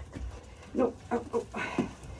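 A lamb bleating in a few short calls.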